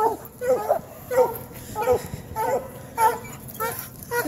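Leashed coyote hounds whining and crying in a run of short, pitched calls that bend up and down, about one every half second. They are frustrated at being pulled off a trail and held back.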